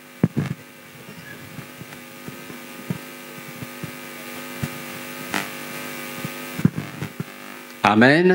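A steady, even-pitched hum with several overtones lasts about six seconds, starting about half a second in and stopping shortly before the end, with a few faint clicks over it.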